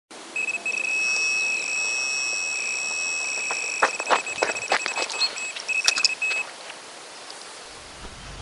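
A high electronic bite-alarm tone sounds almost without a break, dropping out briefly a few times. From about halfway a quick run of sharp clicks joins it, and both stop about six and a half seconds in.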